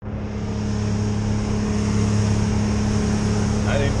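Outboard motor driving a boat at speed: a steady drone that swells over the first two seconds and then holds, with a rush of wind and water over it. A short laugh near the end.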